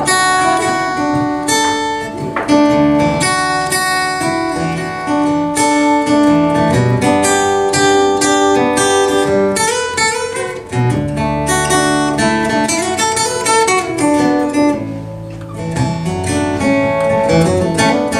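Acoustic guitar played solo, strummed chords ringing with picked notes between them. The playing eases to a brief lull about fifteen seconds in, then picks up again.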